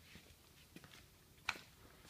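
Faint workshop room tone with a few soft ticks and one short, sharp click about a second and a half in.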